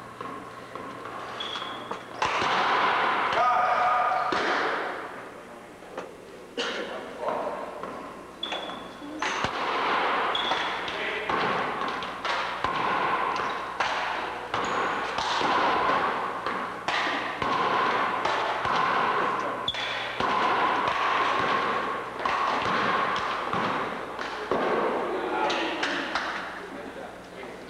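One-wall handball rally: repeated sharp smacks of the rubber ball off players' hands, the wall and the wooden gym floor, heard in a large echoing hall with a few brief high squeaks among them.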